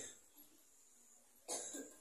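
A single short cough about one and a half seconds in, after a quiet moment.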